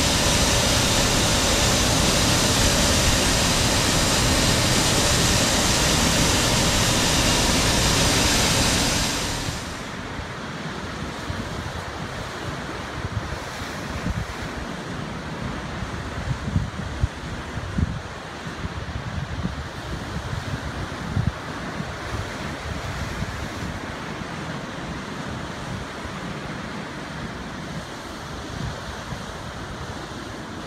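A loud steady hiss from brewery equipment for about the first nine seconds. Then, after a sudden drop, surf breaks and washes over rocks, with wind gusting on the microphone.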